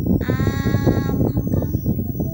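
A high-pitched, drawn-out vocal cry held for about a second on one nearly steady, slightly falling note, bleat-like in character, over a steady low background rumble.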